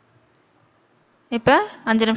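A single faint click about a third of a second in, as the glass lid is lifted off the steamer pot, then a woman's voice speaking loudly from just over a second in.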